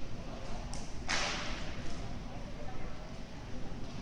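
A single sharp swish about a second in, like the snap of a loose tai chi uniform during a fast Chen-style movement, over the low steady murmur of a large sports hall.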